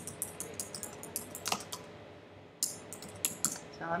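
Typing on a computer keyboard, entering a web address: a run of quick key clicks, a short pause a little past the middle, then more keystrokes.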